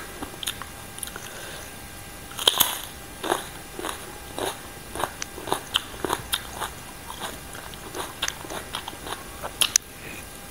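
Close-miked eating: a loud crunchy bite into a whole fresh red chili about two and a half seconds in, then steady chewing of crisp green papaya salad with short wet crunches and mouth clicks. A sharp click comes near the end as more food goes into the mouth.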